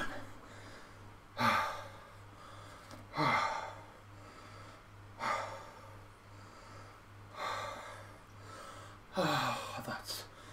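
A man breathing hard, out of breath from exercise-bike cycling: five loud gasping breaths, about one every two seconds, the last one falling in pitch.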